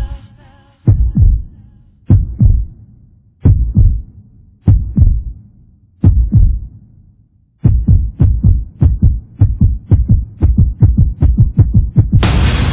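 Heartbeat sound effect: paired low thumps, lub-dub, about one beat a second at first, then quickening from about eight seconds in to a fast, racing beat.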